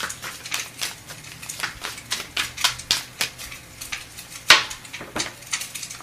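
A deck of tarot cards being shuffled by hand: a run of irregular light card clicks, with one louder snap about four and a half seconds in.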